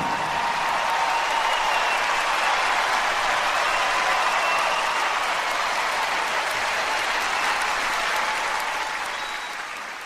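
Large concert audience applauding as the song ends: dense, steady clapping that fades away over the last couple of seconds.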